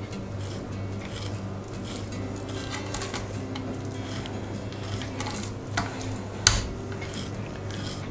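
Chef's knife scoring raw pork escalopes on an end-grain wooden cutting board: light slicing with a few sharp taps of the blade against the wood, the two clearest about six seconds in.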